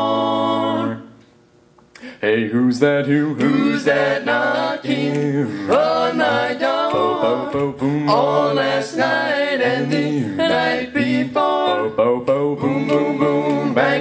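A male a cappella quartet singing: a sustained chord is released about a second in, and after a brief pause the group starts an upbeat, rhythmic doo-wop number in close harmony.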